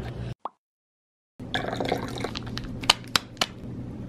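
After about a second of silence, a torn powder stick-pack is tapped and shaken out over a glass of water, giving a scatter of light clicks and crinkles as the powder falls in, over a low steady hum.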